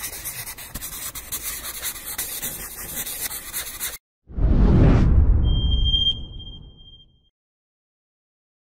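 Sound effects of an animated logo outro: a scratchy, rustling noise for about four seconds, then a loud whoosh with a deep rumble that fades out. A short, high chime rings about a second and a half into the whoosh.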